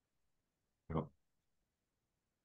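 Near silence, broken once about a second in by a short spoken "ja".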